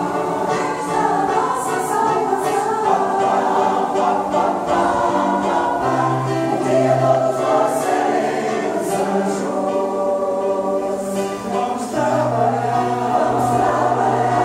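Mixed choir of women and men singing a song together, the voices holding long notes.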